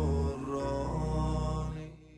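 Sung anthem: a solo voice holds long, steady notes over a low sustained drone, fading out near the end.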